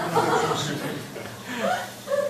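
Light chuckling laughter mixed with a man's voice speaking.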